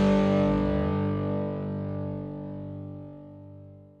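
Final chord of a Christian worship song held and ringing out, fading steadily to silence by the end as the track finishes.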